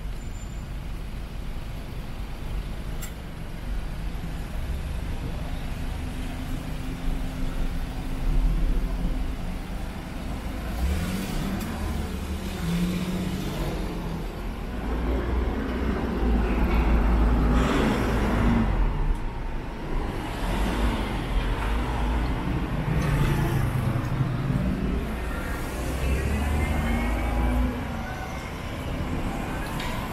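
Street traffic: motor vehicles driving past with engine rumble that swells and fades, loudest about a third of the way in and again just past halfway.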